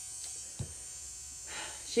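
Electric nail drill (e-file) running steadily and faintly while it files acrylic nails, with a single short tap just after halfway.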